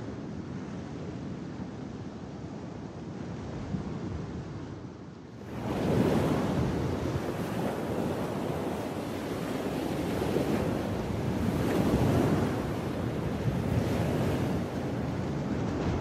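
Sea waves washing onto a sandy beach. Soft and steady at first, the surf becomes louder and fuller about five seconds in, then swells and eases as waves wash in and draw back.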